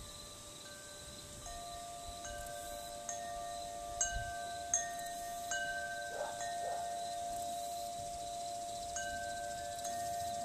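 Wind chimes ringing in a breeze: irregular strikes about every second, each tone ringing on and overlapping the next, with the sharpest strikes near the middle.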